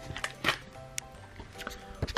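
Quiet background music with steady held notes, broken by a few sharp clicks and handling knocks, the clearest about half a second in and at the end.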